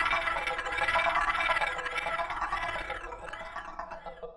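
Electronic sound-effect texture of a music intro: a dense, hissing wash with held tones inside it, swept by a wavy filter that rises and falls about twice a second, thinning out toward the end.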